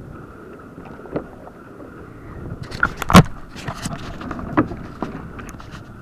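Water and wind around a plastic sit-on-top kayak, then a run of knocks and clicks on the hull from about two and a half seconds in, with one loud thump about three seconds in.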